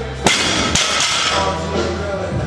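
A 185-pound barbell loaded with rubber bumper plates dropped from overhead onto the gym floor: one loud impact, then a second, smaller knock about half a second later.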